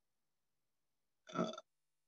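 Near silence, then about a second and a quarter in a woman's short hesitant "uh".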